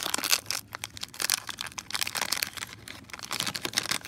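The waxed-paper wrapper of a 1990 Topps baseball card pack crinkling and tearing as it is opened by hand: a dense, irregular run of crackles.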